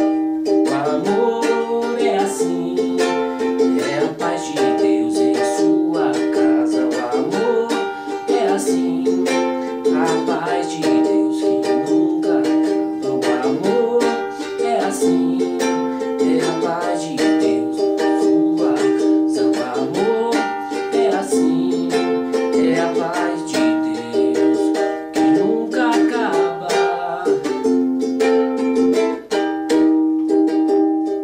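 Ukulele strummed in a steady rhythm through the chords Gm, F and Eb major 7, with a man's voice singing along.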